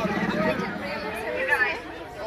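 People talking and chattering, with no clear words.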